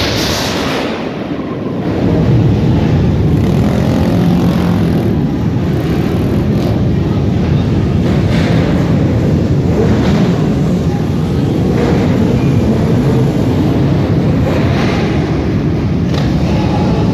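Dense, loud din of many motorcycle engines running and revving together, with occasional sharper rises in the engine noise.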